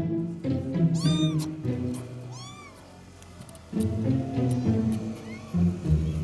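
A cat meowing three times, each call rising and falling in pitch, over background music with low string notes.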